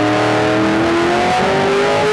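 A stock car's V8 racing engine heard through an on-board camera, running hard under acceleration, its pitch climbing steadily.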